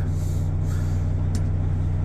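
Diesel engine of a Liebherr LTM1090 all-terrain crane idling steadily, heard from inside the lower cab as a low, even hum. A single short click about one and a half seconds in.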